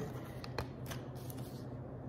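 Tarot cards being shuffled and handled by hand: quiet, soft card sounds with a few faint light taps.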